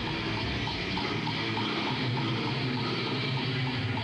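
Heavy metal music playing continuously with a steady beat.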